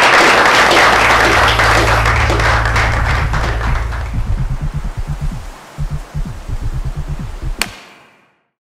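Audience applause fading out over the first few seconds, overlapped by a short outro music sting: a low bass hum, then pulsing bass notes, ending in one sharp bright hit just before it cuts off.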